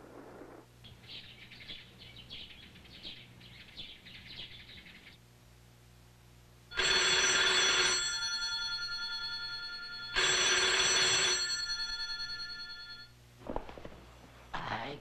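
Telephone bell ringing: two rings about three seconds apart, each lasting a little over a second and then dying away. It is an incoming call.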